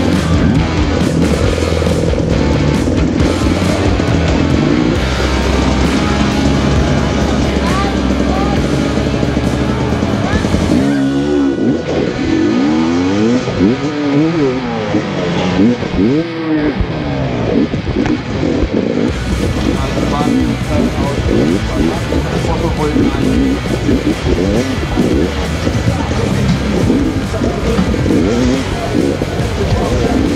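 Dirt bike engine running and revving hard, its pitch sweeping up and down as the rider launches from the start and rides the course, with background music mixed over it.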